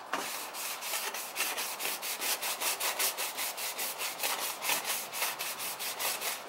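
A Scotch-Brite abrasive pad rubbed quickly back and forth over a metal bracket, about four strokes a second, scuffing the surface so paint will stick.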